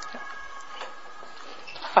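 Steady background hiss of a room recording with a faint high hum of a few even tones that fades out partway through, and a few light clicks. A man's voice starts with 'Ah' at the very end.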